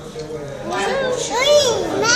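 Speech only: a young child's high voice saying a word or two, rising and falling in pitch, after a brief lull.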